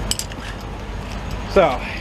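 A few quick, light metallic clinks of hand tools, a wrench and socket knocking together, over a steady low background rumble.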